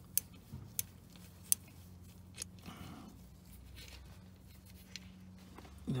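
Three sharp, small metallic clicks in the first second and a half as a Torx bit and the torque converter drain plug are worked loose by hand, over a low steady hum.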